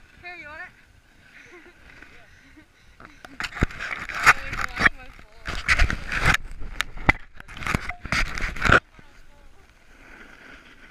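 Snowboard scraping hard over packed snow: loud, irregular scraping strokes and knocks starting about three seconds in and cutting off suddenly near the end. A short wavering cry-like sound comes at the very start.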